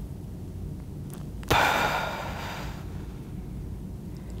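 A woman's deep breath let out in a long, slow sigh through the mouth, starting suddenly about one and a half seconds in and fading away over a second or so: a deliberate relaxing breath in a deep-breathing exercise.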